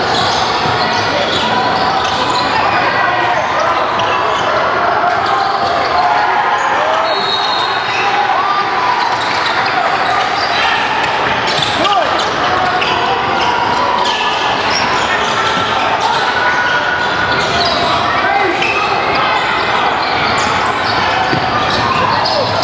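Busy gymnasium during a basketball game: a basketball bouncing on the hardwood, sneakers squeaking, and many voices talking and calling out across the echoing hall.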